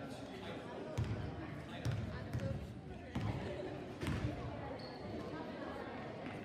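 A basketball being dribbled on a gym floor, a thump about once a second, echoing in a large gym under a murmur of voices.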